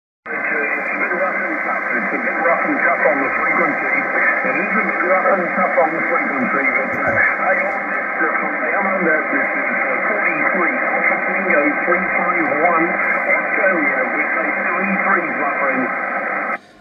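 A distant station's single-sideband voice on the 11-metre CB band heard through a transceiver's speaker, faint and buried in heavy static and band noise, with the sound cut off above about 2.5 kHz. The reception is rough and tough: a long-distance skip contact from Australia on a busy band.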